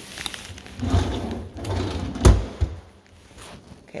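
Wooden pull-out drawer in a kitchen base cabinet sliding along its track, then a sharp knock a little over two seconds in as it hits its stop, with a smaller click just after. The drawers are not soft-close.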